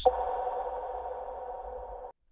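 Electronic intro sting: a sharp hit followed by a held synthesized chord of a few steady pitches, slowly fading and cut off abruptly at the end.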